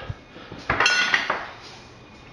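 A single metallic clink about two-thirds of a second in, with a brief high ring that fades within about half a second.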